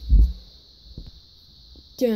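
A short, loud, low thump of handling noise, followed by a couple of faint plastic clicks as a Lego lightsaber is fitted into a minifigure's hand.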